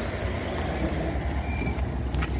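A steady low engine rumble.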